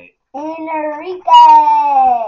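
A child's voice sing-songing the name "Enrique" in two drawn-out phrases. The second phrase is the louder one, held and slowly falling in pitch.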